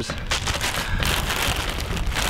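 A thin plastic bag crinkling and rustling as it is handled, a dense crackly patter, over a low wind rumble on the microphone.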